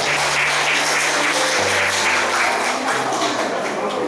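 Audience clapping steadily throughout, over background music with steady low notes.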